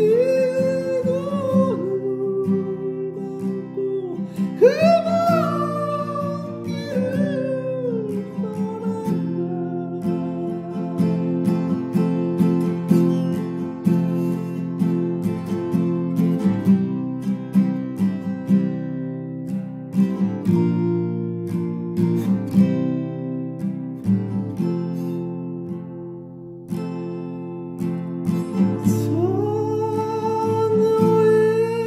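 Acoustic guitar playing a slow song, with a voice singing over it for the first several seconds. The voice stops about nine seconds in, leaving the guitar alone, and comes back in near the end.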